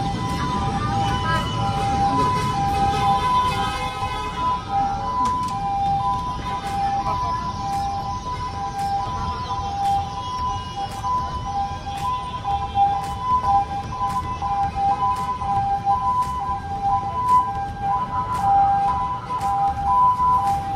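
A two-tone hi-lo siren sounding steadily, its two pitches alternating. Background music with a steady beat runs under it, over street noise.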